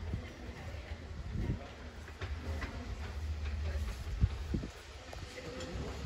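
Low rumble of a steam locomotive and train drawing slowly towards the station platform, with a single sharp knock a little past the middle and people talking quietly nearby.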